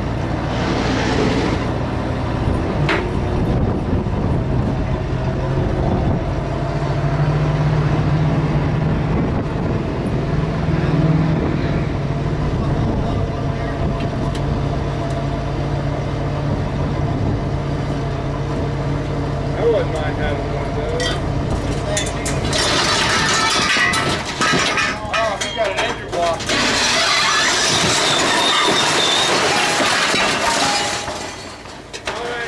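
Dump truck's engine running steadily while the hydraulics raise the loaded bed, the engine held at a higher speed from about 7 s in. About 22 s in, the load of scrap metal starts sliding off and crashing down, a loud clattering rumble of metal on metal that grows heavier near the end.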